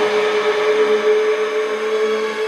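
Neurofunk drum and bass track in a breakdown: a loud, noisy, whirring synth drone holding one steady tone, with no drums or bass.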